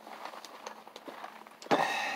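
A man drinking from a plastic tumbler: small clicks of swallowing and cup handling, then a loud breathy sound as he takes the cup from his mouth near the end.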